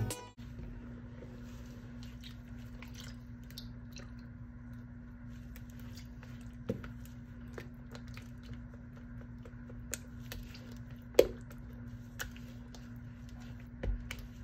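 Faint stirring and scraping of a silicone spatula through thick soap batter in a plastic pitcher, with a few soft knocks, the loudest about 11 seconds in, over a steady low hum. The batter has thickened after the fragrance oil went in and is being stirred to loosen it back up.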